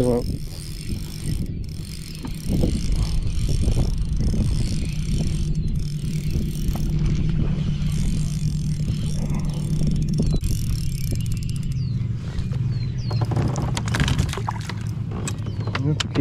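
Spinning reel being cranked, its gears whirring steadily with fine clicking as a hooked bass is wound in. The winding stops about eleven seconds in, followed by a few knocks and rattles.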